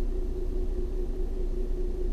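Steady low rumble of a car's engine running, heard from inside the cabin, with a faint steady hum over it.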